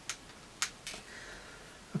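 A few light plastic clicks and taps, the strongest a little past half a second in: small toy accessory pieces being pushed together as a pillar is pressed into a plastic dock.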